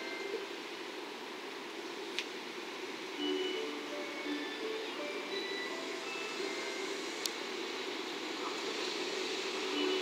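JR Freight EF210 electric locomotive approaching with a long train of rail-carrying flatcars: a steady rumble that grows louder toward the end, with scattered short tones and two sharp clicks.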